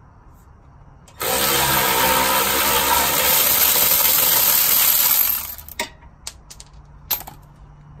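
Milwaukee cordless power tool running hard for about four seconds, spinning the nut off the strut's lower mounting bolt while a wrench holds the bolt, followed by a few light clinks.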